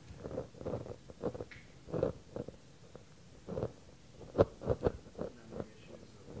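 A faint, distant voice, a student answering from the audience of a lecture hall in short, separated syllables, muffled and far from the microphone.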